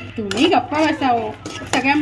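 Metal spatula scraping and knocking against a metal kadhai as pieces of dried ginger are stirred and roasted, with a few sharp clanks. A voice is heard over it, louder than the clanks.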